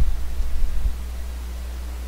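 Steady low electrical hum and faint hiss from a recording setup. A brief low rumble comes in the first second.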